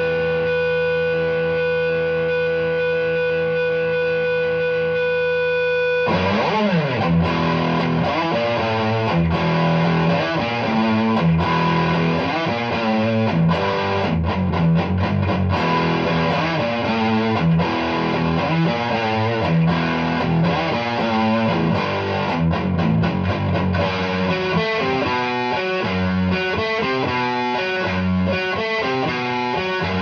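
2013 Gibson Les Paul Studio electric guitar played through an amp on overdrive. A distorted chord rings out and sustains for the first several seconds, then gives way to a busy run of riffs and quick single-note lines.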